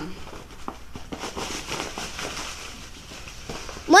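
Clothes being rustled and shuffled by hand, with scattered light crackles and knocks of handling noise.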